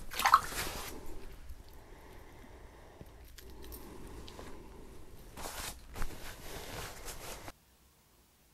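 Close handling noises: fabric rustle and a wet squish of hands working, with a brief sharper scrape about five and a half seconds in and a click just after.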